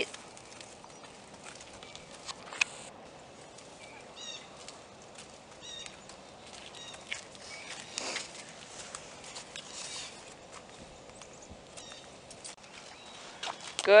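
Faint, scattered steps of a Percheron mare's hooves and a person's feet walking on wet, muddy ground, with a few short bird chirps a few seconds in.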